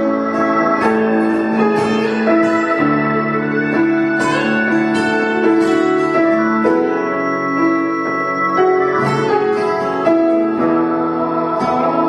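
Grand piano playing held chords in an instrumental folk passage, changing chord about every second, with a slide guitar playing along.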